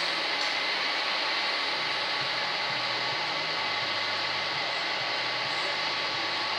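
A steady, even hiss at a constant level, like air rushing.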